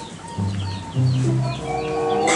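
Chickens clucking in short calls, over background music with held low notes.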